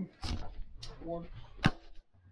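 Handling knocks with one sharp click near the end, the loudest sound, among a few muttered words.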